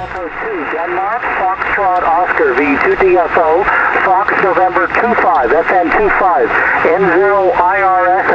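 A distant ham station's voice received on 144 MHz single sideband through an Elecraft K3 transceiver: a narrow, tinny voice over steady band hiss, carried by a sporadic-E (E-skip) opening.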